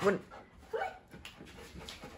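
Golden retriever giving one brief vocal call, about a second in.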